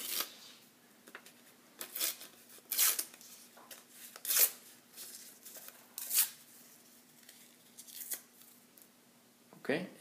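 Sheets of orange paper torn by hand into small pieces, about six short, sharp rips spaced a second or two apart.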